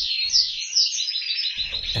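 Cage birds singing: a continuous run of rapid, high twittering notes.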